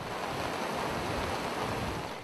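Floodwater rushing and churning through the gap of a washed-out road bridge: a steady rushing noise with no breaks.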